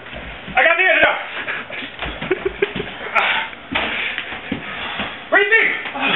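Two men's voices straining and exclaiming in short outbursts without clear words, with shuffling and scuffling as they grapple.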